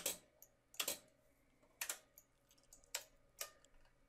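A few sharp, quiet clicks from computer input, some in close pairs, spaced roughly a second apart, as the 3D view is clicked and navigated.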